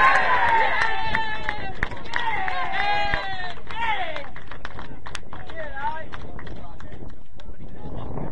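Footballers shouting and calling to each other during play, loudest in the first four seconds, with fainter calls a couple of seconds later. Short sharp knocks are mixed in throughout.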